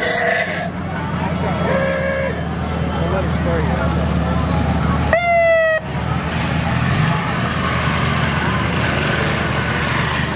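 Parade vehicles running past a crowd of chatting spectators, with short horn toots near the start and again about two seconds in. About five seconds in comes a loud horn blast, under a second long and rising slightly in pitch.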